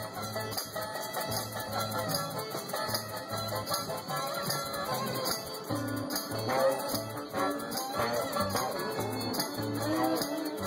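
Live acoustic band playing an instrumental groove: a bass line of short repeated low notes under picked and strummed acoustic guitar, with a shaker keeping a steady rhythm.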